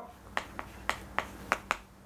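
Chalk clicking against a chalkboard while characters are written: about six short, sharp taps spread over a second and a half.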